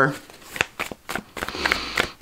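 A deck of tarot cards being shuffled by hand, a string of short light clicks and flicks as the cards slip against each other.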